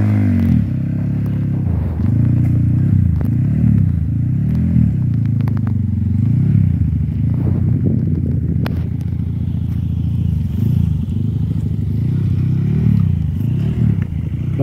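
Trail bike engine revved again and again, its pitch rising and falling every second or two, as it struggles to get up a steep muddy climb. A few sharp clacks come in around the middle.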